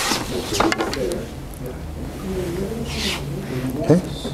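Indistinct voices of people talking in a large practice hall, over a steady low hum, with a couple of light clicks under a second in.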